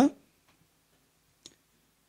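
A man's spoken word ending, then a quiet room with one faint short click about one and a half seconds in.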